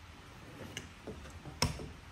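A couple of small mechanical clicks from a biscuit joiner being handled and its depth selector set to the #20 biscuit size, a faint tick and then a sharper click about one and a half seconds in.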